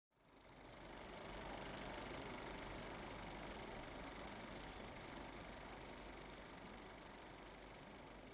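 Faint, steady old-film noise effect: hiss and fine crackle with a low hum underneath, fading in over the first second.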